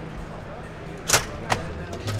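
Two sharp clacks about a third of a second apart, the first the louder, from a glass exit door's metal push bar and frame as the door is pushed through, over a murmur of background voices.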